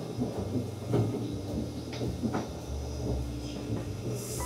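Quiet restaurant room tone: a steady low hum with a few faint, short knocks.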